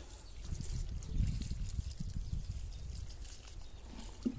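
Water pouring from a plastic watering can onto the potting soil of a potted tree, a faint, uneven trickle with a low rumble underneath.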